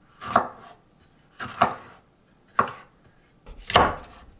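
Kitchen knife slicing bell peppers on a round wooden cutting board: four unhurried cuts, about a second apart, each ending sharply on the board.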